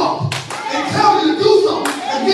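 A congregation clapping, with voices shouting over it. Low thumps come about twice a second, and two sharp claps or knocks are heard.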